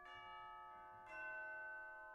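Faint bell chimes in the film's music score: two strokes about a second apart, each ringing on and slowly fading.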